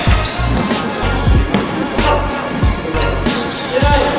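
Basketball bouncing on a hardwood gym floor: repeated thumps about every half-second or so, in a large echoing hall.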